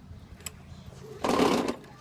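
Walk-behind lawn mower's recoil starter pulled once about a second in: a short burst of rapid mechanical cranking lasting about half a second.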